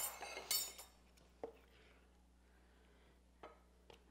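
A serving spoon scraping and clinking against a skillet as shrimp in cream sauce is scooped out. There is a flurry of clinks in the first second and a single tap about a second and a half in, then only faint room sound.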